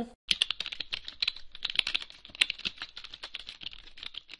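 Fast computer-keyboard typing: a quick run of clicking keystrokes, many a second, starting a moment in.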